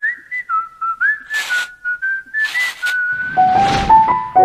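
A short whistled tune of quick note hops and slides, with two brief swishes midway. A rising whoosh builds to the loudest point near the end as the tune drops lower.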